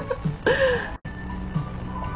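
A short laugh, then quiet background music with faint held high notes and a soft low note about once a second. The sound cuts out for an instant about a second in.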